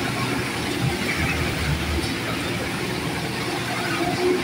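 A vehicle driving through floodwater on a road: its engine rumbles under a steady rush of water splashing against the body.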